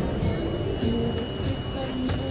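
Street-market crowd sounds: nearby people chatting indistinctly, with music playing in the background.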